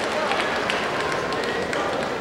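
Crowd murmur and general noise of a large sports hall, a steady haze of many distant voices.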